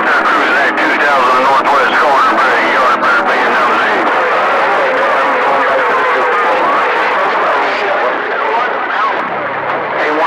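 CB radio receiver audio on channel 28: an unintelligible voice coming through static and interference, with a few sharp crackles in the first three seconds.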